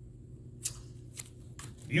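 Low steady room hum with two short sharp ticks about half a second apart, then a few fainter ticks, before a man's voice begins at the very end.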